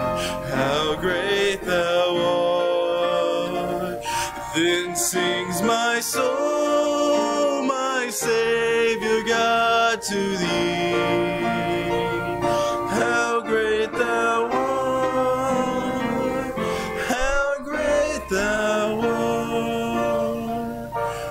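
Congregation singing a slow hymn, led by a man's voice, with instrumental accompaniment.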